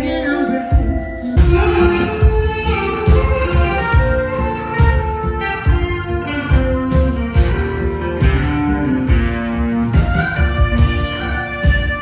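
Live band playing, heard from the audience: guitar, keyboard and drums, with a woman singing.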